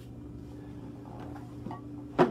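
Quiet room tone with a steady low hum, and a faint tap shortly before the end.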